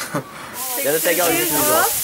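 Voices talking over a steady, even hiss that sets in about a quarter of the way in.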